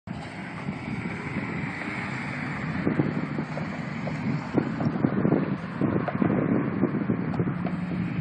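Wind buffeting a phone microphone in uneven gusts, heaviest around the middle, with a steady low hum coming in during the second half.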